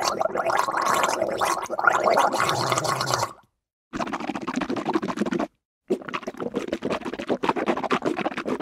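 Mouthwash being gargled in the throat, a bubbling liquid sound that stops about three seconds in. After a short break come two more stretches of mouthwash rinsing in the mouth, split by a brief gap.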